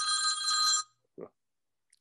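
iPhone ringtone ringing: a steady chime of several high tones that cuts off abruptly just under a second in.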